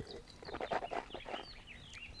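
Faint, short, high bird chirps, with soft mouth sounds of a sip of red wine being tasted.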